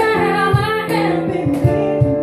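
A woman singing live into a microphone while accompanying herself on an electronic keyboard: long held sung notes over sustained keyboard chords, with a steady low beat about twice a second.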